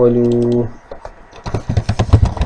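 A drawn-out hum from a man's voice ends about half a second in. Then rapid typing on a computer keyboard starts about a second and a half in, a quick run of key clicks.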